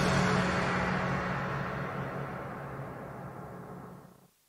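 The closing hit of a news-style intro theme ringing out as a sustained low drone and noisy wash, fading steadily and cutting off at the end.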